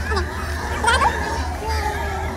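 Background chatter of people and children's voices, over a steady low hum.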